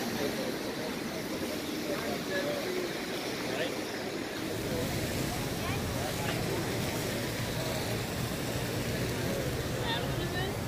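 A car's engine running close by, its low rumble growing stronger about halfway through, over a steady rush of street noise with faint voices in the background.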